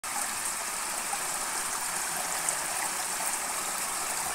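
Shallow water rushing steadily across and through the bamboo slats of a traditional fish trap, a constant streaming wash with a few faint ticks.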